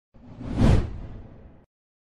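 Cartoon whoosh sound effect: a single swish that swells to a peak a little over half a second in and fades away before the end.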